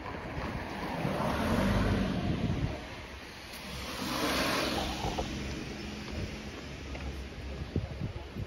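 Road traffic: two cars pass on the street, their engine and tyre noise swelling and fading about a second in and again about four seconds in.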